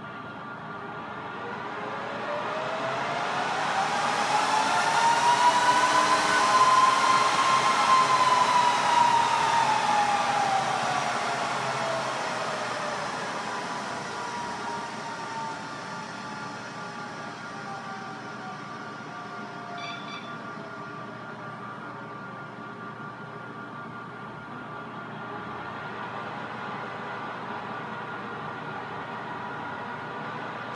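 Symantec NetBackup 5230 rack server's cooling fans revving up at power-on into a loud rising whine. The whine peaks about six to eight seconds in, then slowly winds back down over the next fifteen seconds or so to a steady, quieter but still audible fan hum, the server's normal running level while it boots.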